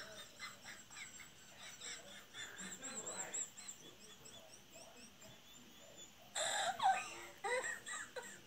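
Faint sound of a TikTok video playing through a tablet's speaker: a voice with some high chirp-like sounds, growing louder for a moment about six seconds in.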